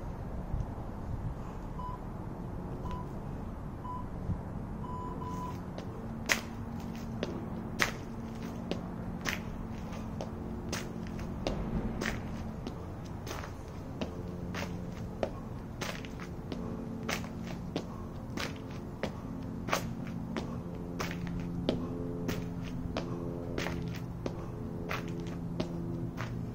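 Four or five short electronic beeps about a second apart, like a workout interval timer counting down. From about six seconds in comes a jump rope slapping the asphalt as he skips, sharp clicks at an uneven pace of roughly one or two a second.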